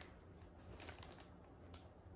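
Near silence, with a few faint, brief rustles of a clear plastic zip-top bag being lifted out of a cardboard box.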